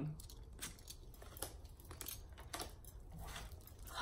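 A few faint, scattered taps and rustles of tarot cards being set down on a wooden table and the deck being handled.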